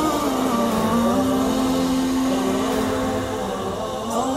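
Channel ident jingle: music with long held notes that slide from one pitch to the next.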